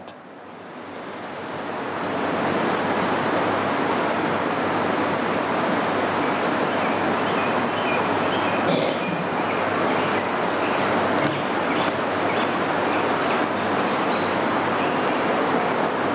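Steady rushing noise of heavy rain, rising over the first two seconds and then holding even, with a few faint ticks.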